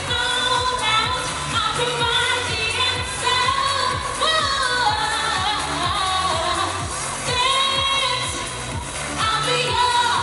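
Live pop music: a woman singing into a microphone over an amplified backing track with a steady beat.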